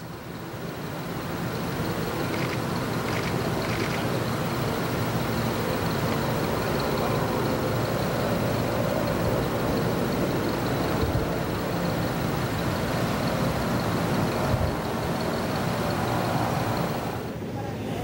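A vehicle engine running steadily at low revs, with voices murmuring in the background.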